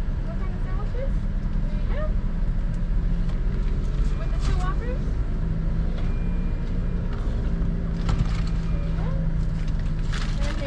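Stopped vehicle idling, heard from inside the cabin as a steady low hum, with faint voices at times and a few small clicks and knocks.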